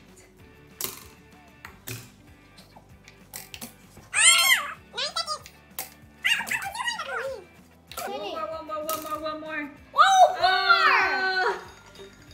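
Popsicle-stick catapults with plastic-spoon arms clacking as they are flicked, several sharp clicks a second or so apart. From about four seconds in, excited shouts and squeals from a child and a woman take over and are the loudest sound.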